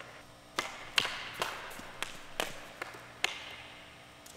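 Hockey stick striking a puck on the ice: about eight sharp clacks, roughly one every half second, each ringing out in the echo of the arena. The loudest comes about a second in.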